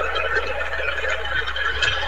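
Applause and cheering from several participants on a video call, heard through the call's audio as a steady wash of clapping mixed with voices.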